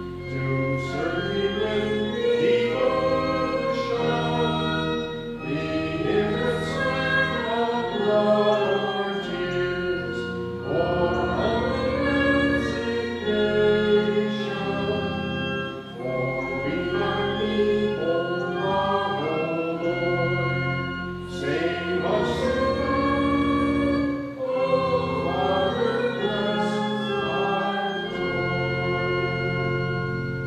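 Voices singing a hymn with organ accompaniment: held organ chords under the sung melody, phrase after phrase.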